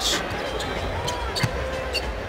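A basketball being dribbled on a hardwood court, a few sharp bounces about half a second apart, over the steady murmur of an arena crowd.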